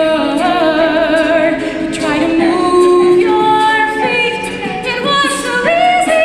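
Mixed-voice a cappella group singing: a female lead at a microphone over the group's backing voices, in held notes that waver and step from pitch to pitch.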